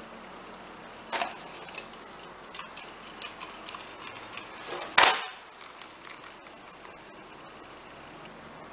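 Small clicks and handling noises from a hot glue gun and fabric as elastic is glued onto a felt hat, with a sharper click about a second in and a louder knock about five seconds in.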